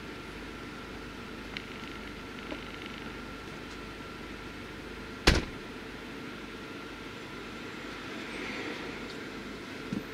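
Steady hum inside a parked car, with a couple of faint clicks and one loud, sharp thump about five seconds in.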